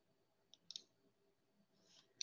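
Near silence broken by faint computer mouse clicks: a single click about half a second in, then a quick double click just after.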